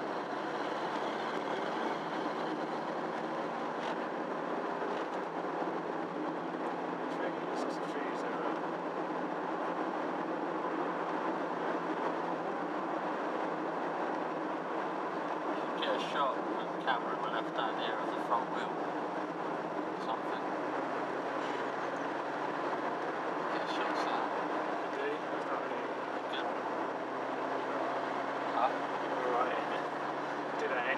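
Steady engine drone and tyre noise inside the cabin of a car with a 1.9 diesel engine, driving along a winding road. A few short clicks and rattles come about halfway through and again near the end.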